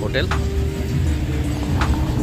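A van's engine running close by as it drives past, a steady low rumble, with music of long held notes playing over it.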